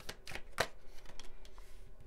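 A tarot deck being shuffled and handled by hand: an irregular run of soft card slaps and riffles, a few a second.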